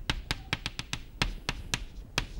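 Chalk tapping and scraping on a blackboard while a formula is written: about a dozen sharp, quick, irregular taps.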